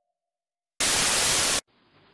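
A short burst of loud static white noise, under a second long, used as a TV-static transition effect between clips. A faint tone fades out before it, and a faint steady hiss follows it.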